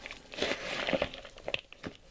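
Wooden spoon stirring a stuffing of chopped chestnuts and sausage meat in a bowl: an irregular scraping rustle with a few louder strokes.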